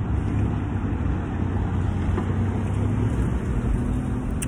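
Steady low rumble of street traffic, with a constant low hum underneath.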